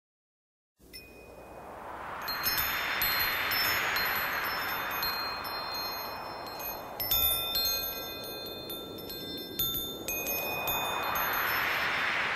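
Wind chimes tinkling in high, overlapping rings, starting about a second in, over a hissing whoosh that swells up and fades away twice.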